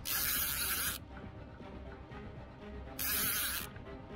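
Fishing reel's drag buzzing as a catfish pulls line against the bent rod, in two bursts of about a second each, the second about three seconds in.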